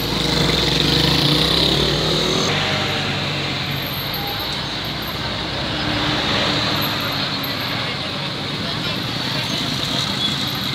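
Motorcycle engines and street traffic heard while riding along a road, louder for the first couple of seconds, with indistinct voices from people at the roadside.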